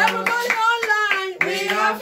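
A woman singing a hymn while shaking a maraca in a steady beat, about four shakes a second.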